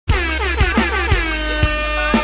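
Music opening with repeated air-horn blasts whose pitch slides downward, over a kick drum beating about twice a second.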